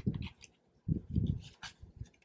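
Paper dollar bills being counted and shuffled by hand: crisp paper snaps over dull thumps and rubbing of hands and bills against the binder, in two short flurries.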